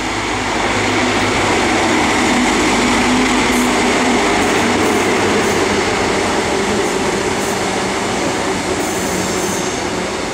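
CrossCountry HST's Class 43 diesel power car running past close by, loudest about two to four seconds in, followed by its coaches rolling by with the steady noise of wheels on rail.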